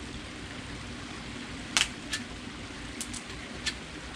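Caulking gun dispensing a bead of construction adhesive: a handful of sharp clicks from its trigger and plunger, the loudest nearly two seconds in, over a faint steady hum.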